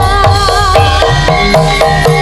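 Live Javanese gamelan ensemble playing with a drum kit: repeated metallophone notes over a steady drum beat and cymbals, with a wavering melody line on top.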